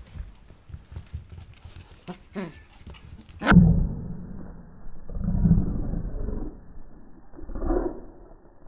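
Welsh corgi puppy growling and barking in play, in three loud bursts starting suddenly about three and a half seconds in, after light ticks and a few small yips.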